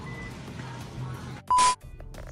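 Faint background music and hum in a supermarket. About one and a half seconds in, a short, loud beep with a steady high tone sounds and cuts off abruptly.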